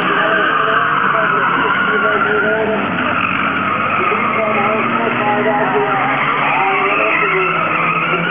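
Several oval-racing cars' engines running hard and revving up and down together as the cars slide through a bend.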